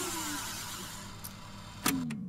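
Tape-machine sound effect: a hissing, whirring run that slowly fades, its pitch sliding down as it winds down. A sharp click comes near the end, followed by another falling pitch.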